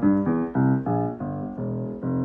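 A 1936 Blüthner Style IVa baby grand piano is played: a quick run of chords in the lower middle range, then one chord held near the end. Its hammers have been voiced to even out the tone, and it sounds mellow.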